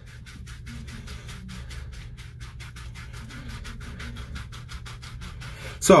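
Avilana silicone body scrubber rubbed rapidly back and forth over a wet, soapy forearm, a steady scratching of several quick strokes a second as it works the soap into a lather.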